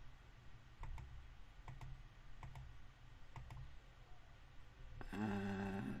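A computer mouse clicking a handful of times, roughly a second apart, while dialog sliders are adjusted on screen. Near the end a voice holds a low, steady hum for about a second.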